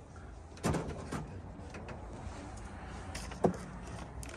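Drawer of a steel Matco tool chest sliding on its runners about half a second in, then a shorter slide. A sharp knock comes near the end.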